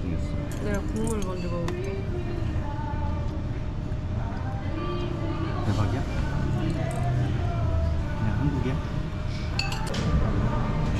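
Metal spoons and chopsticks clinking against a stainless-steel bowl and dishes at a meal table, a few sharp clinks scattered through, over voices and a low background rumble.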